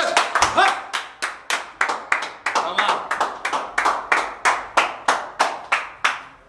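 Rhythmic hand clapping, steady at about four claps a second, with a brief shout about half a second in; the clapping cuts off at the end.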